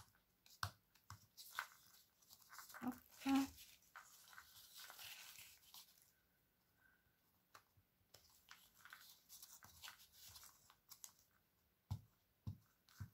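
Faint rustling and scraping of a small piece of paper as a glue stick is rubbed across it and fingers press it down, with scattered light clicks. One brief louder sound comes about three seconds in.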